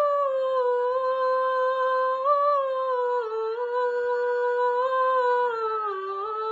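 A girl's solo voice singing a slow Christmas song melody in long held notes that step gently and drift downward in pitch.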